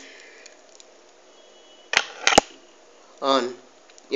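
Two sharp clicks about two seconds in, less than half a second apart, against quiet room tone.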